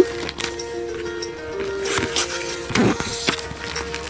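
Soft background music of held notes that change every second or so, with a brief papery rustle near the end as a picture-book page is turned.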